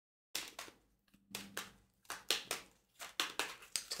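A deck of tarot cards being shuffled and handled: a string of short, irregular papery slaps and rustles starting just after the beginning.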